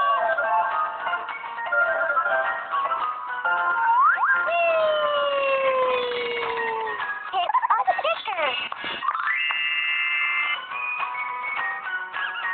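Cartoon game music and sound effects from a children's ABC learning app: a quick rising swoop about four seconds in, then a long falling whistle-like tone, a warbling wobble near eight seconds, and a bright held chord shortly after.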